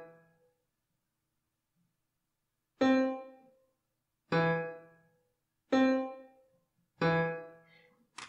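Sampled piano notes from Finale's playback, sounding one at a time as notes are entered into the score. There are four short single notes about a second and a half apart, alternating between a higher and a lower pitch, each dying away quickly.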